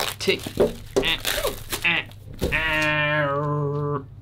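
A person's voice: a few brief bits of talk or laughter, then one long drawn-out vocal note, wavering slightly, held for about a second and a half before it cuts off suddenly near the end.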